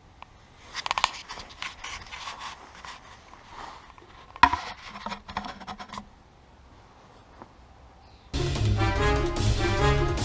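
Scraping and clicking handling noises with one sharp click about four and a half seconds in, then a brief lull. Loud brass-led background music starts near the end.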